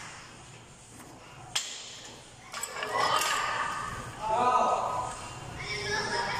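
A person's voice, untranscribed and indistinct, starting about two and a half seconds in, after a single sharp click.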